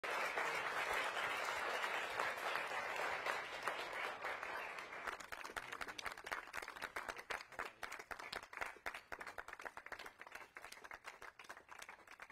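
Audience applauding: close, dense applause for the first few seconds, then thinner applause in which separate hand claps can be picked out.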